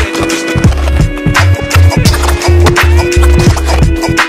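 Background music with a steady beat and a pulsing bass line.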